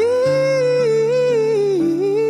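A ballad with one singer holding a long note with vibrato over steady held accompaniment chords. The voice slides up into the note at the start and falls away near the end.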